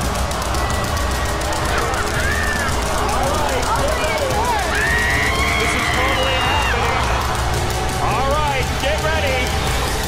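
Background music with a steady beat, under screams and exclamations from the studio audience and judges.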